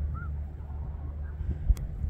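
Snow geese calling faintly in the distance, a few short high honks over a steady low rumble, with a single sharp knock near the end.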